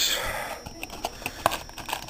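Hands handling a cardboard phone box and its packaged accessories: a short rustle, then a few light clicks and taps.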